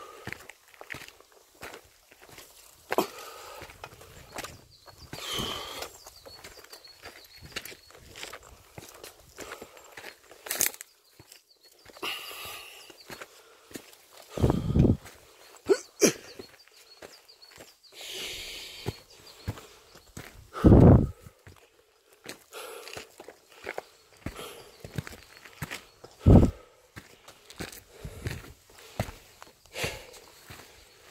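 A hiker's footsteps on a dry, gritty decomposed-granite mountain trail: irregular crunching and scuffing steps, with a few heavier thumps along the way.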